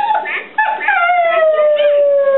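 Alaskan malamute howling: a short note, then one long howl that slides slowly down in pitch.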